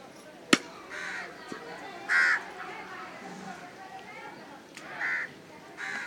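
A single sharp chop of a cleaver through chicken into a wooden chopping block about half a second in, the loudest sound. A bird calls three short times, at about one, two and five seconds.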